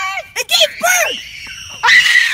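Short vocal sounds from a person, then a loud, harsh scream starting near the end.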